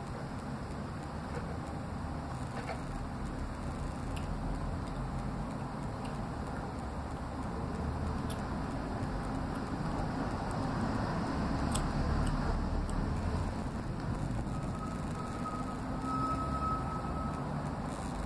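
Steady low background rumble, a little louder in the middle, with a faint thin tone for a few seconds near the end.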